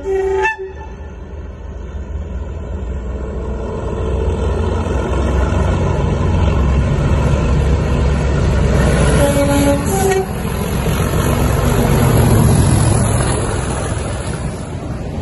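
Class 37 diesel locomotive sounding its two-tone horn, a low note then a high note, at the start and again about nine seconds in. Under it the locomotive's English Electric V12 diesel engine works hard with a deep rumble that grows steadily louder as the train approaches, loudest as it passes close by near the end.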